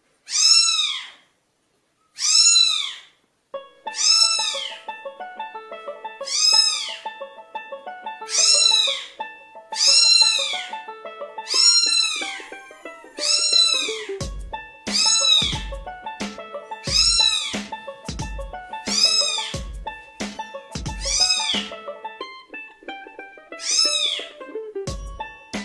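Very young kitten meowing over and over, a high mew that rises and falls, about one every one and a half to two seconds. Background music comes in a few seconds in, with a low beat joining about halfway through.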